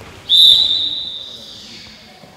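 Handball referee's whistle: one long, high blast that begins about a third of a second in and trails off.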